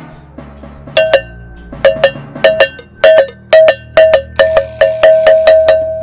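Percussion music: a ringing metal bell, like a cowbell, struck in a beat that starts about a second in and quickens towards the end, over a low steady drone. The last strike rings on.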